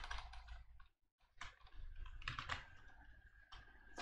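Faint computer keyboard typing: scattered key presses while a line of code is deleted and retyped, with a brief dead-silent gap about a second in.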